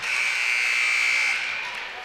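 Gymnasium scoreboard buzzer sounding one steady high-pitched tone for about a second and a half, then fading.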